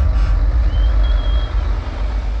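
Heavy tractor-trailer's diesel engine rumbling as the truck drives slowly past, with a thin high tone sounding for about a second midway.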